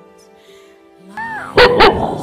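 Shar-Pei x Golden Retriever mix dog giving a short whine, then two sharp barks in quick succession near the end, a play bark at a ball held above her head. Soft background music plays underneath.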